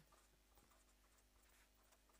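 Near silence: room tone with faint scratchy strokes of writing.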